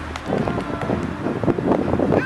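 Wind buffeting the microphone: an irregular rumbling rush that comes up about a quarter second in and stays loud.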